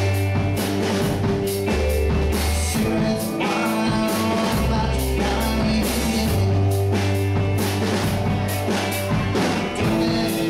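Live rock band playing a song: electric guitar, electric bass holding long low notes that change every second or so, and a drum kit keeping the beat.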